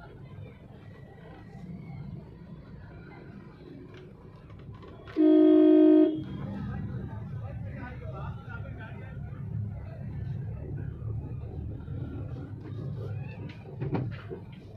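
A vehicle horn sounds once, about five seconds in: a single steady tone lasting about a second, over a low traffic rumble and people's voices.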